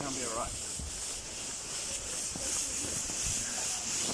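Battery-powered blower fan of an inflatable costume running steadily, a constant hiss of air, with the nylon costume rubbing and rustling against the microphone.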